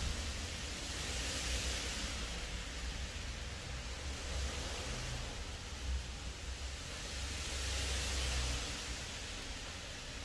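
Heavy rain falling, a steady hiss that swells a little twice, over a low rumble.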